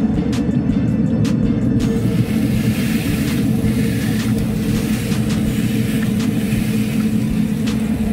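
A ribeye steak sizzling on hot grill grates, the hiss coming in about two seconds in after a few light clicks. It sits over a steady low rumble with background music.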